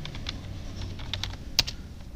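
Typing on a computer keyboard: a string of separate key clicks, with one sharper, louder keystroke about a second and a half in, over a faint low steady hum.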